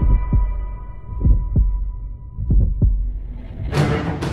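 Heartbeat sound effect in an intro soundtrack: three double low thumps about one and a quarter seconds apart, over a faint steady high tone that fades. Music comes back in near the end.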